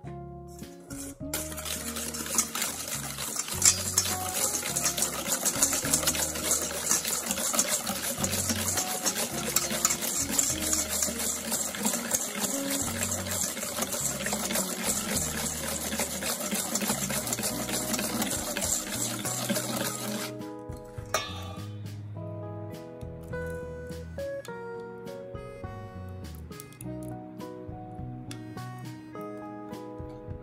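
Wire whisk beating egg yolks, sugar and vanilla paste in a stainless steel bowl: a fast, steady scraping rattle of the wires against the metal for about twenty seconds, stopping abruptly. Background guitar music plays throughout.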